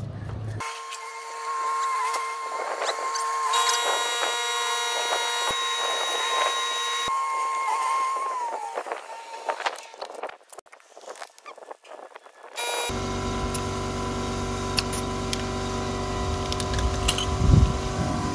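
A portable electric tyre inflator running with a steady hum, pumping up a long-flat car tyre. Around the middle the hum stops and a few irregular clicks and knocks of handling the valve and hose are heard. Then an inflator runs again, louder, near the end.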